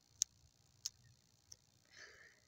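Three sharp tongue clicks, evenly spaced about two-thirds of a second apart, made to call a pet rabbit.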